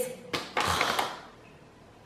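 Plastic protein-powder pouch being handled: a sharp click about a third of a second in, then a brief crinkling rustle that dies away after about a second.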